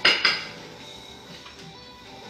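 Kitchenware clattering: two quick clanks right at the start that ring out within half a second, over soft background music.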